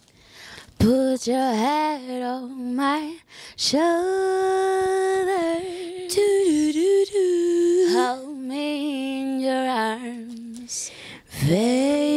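A woman singing unaccompanied, a cappella, in long held notes with a short break near the end before a new phrase.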